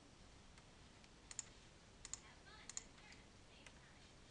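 Computer mouse button clicks over faint room noise: three quick double clicks, about a second, two seconds and under three seconds in, and a couple of fainter single clicks.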